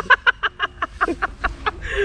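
A man laughing hard: a quick run of short bursts of laughter.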